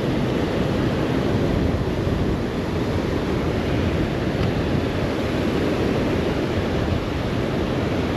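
Rough surf breaking along the beach, mixed with wind blowing across the microphone: a steady, loud wash of noise with no distinct separate events.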